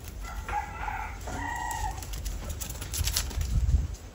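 A rooster crowing once, a call of about a second and a half starting just after the start, followed near the end by a low rumble.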